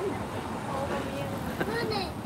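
Speech: a person talking in short, broken phrases over a steady low background hum.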